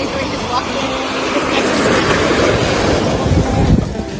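Surf washing over a rocky shoreline, with wind buffeting the microphone. The sound swells toward the end, with a low rumble just before it stops.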